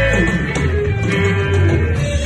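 Live band playing an instrumental rock passage: electric guitars carry the melody over a bass guitar, with a sliding note falling near the start.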